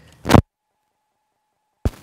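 A short, loud burst of microphone noise, then the sound drops out to dead silence with a faint steady tone for about a second and a half, ending in a click as the audio returns.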